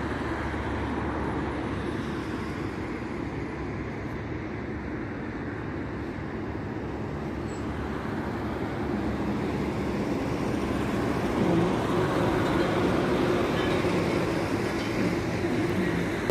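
Steady low rumble of a jet airliner approaching to land, growing gradually louder through the second half as it comes in low overhead.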